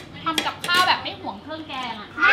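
Metal spoon and fork clinking and scraping on ceramic plates during eating, with a voice talking over it.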